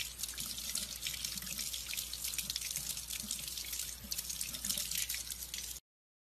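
Tap water running and splattering over a puppy held in the stream under the faucet. It cuts off abruptly just before the end.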